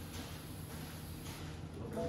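Quiet room tone: a steady low hum with faint rustling, a little more of it near the end.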